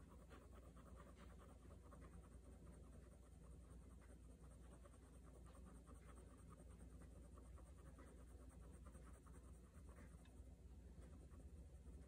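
Fine-tip ink pen scratching on sketchbook paper in many short, faint strokes as small details of a drawing are inked, over a steady low hum.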